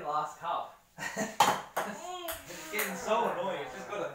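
Men's voices, with a single sharp click about a second and a half in: a ping-pong ball striking the table or a plastic cup.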